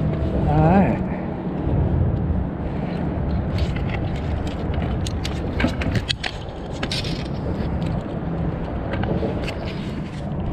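Sharp clicks and knocks between about five and seven seconds in, as a landing net holding a sheepshead is hauled up onto a concrete bridge piling. A steady low rumble runs underneath.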